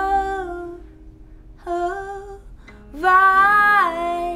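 A woman singing, in three held phrases with short gaps between them, the last one the loudest.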